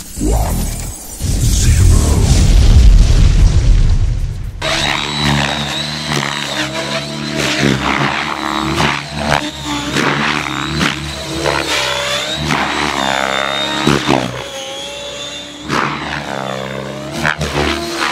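Align T-Rex 700X electric RC helicopter in flight: the rotor noise and a high steady whine, with pitch rising and falling repeatedly as it manoeuvres and passes. It opens with a loud deep rumble lasting about four seconds.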